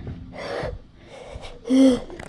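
A girl breathing out audibly, then a short, loud voiced gasp near the end.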